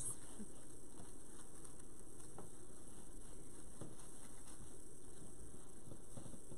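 Faint rustling and a few light ticks of ribbon and deco mesh being handled on a wreath frame, over a steady background hiss.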